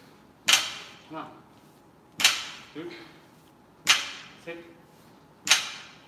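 Loaded barbell with iron plates set down hard on the rubber gym floor at the bottom of each deadlift rep, four sharp clanks with a short ring, about one every second and a half.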